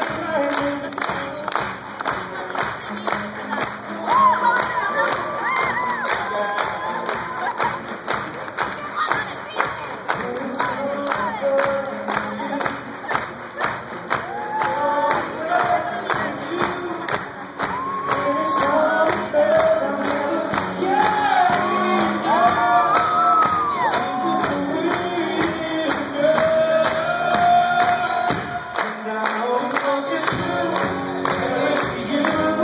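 Live pop-rock song with a male lead singer through the PA, while the concert crowd claps a steady beat and sings along.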